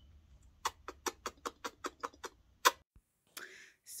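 A quick run of about a dozen sharp clicks, roughly five a second for about two seconds, the last one louder.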